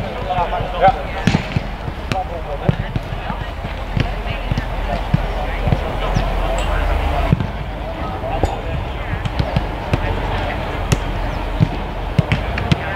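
Footballs being kicked and passed in a warm-up: irregular sharp thuds of boots striking balls, several overlapping from different players, with voices in the background.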